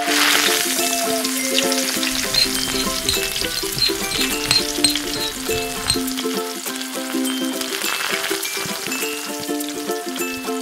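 Minced garlic sizzling in hot cooking oil in a tiny pan. The sizzle surges as the garlic drops in and again briefly near the end, with a small fork stirring it in between.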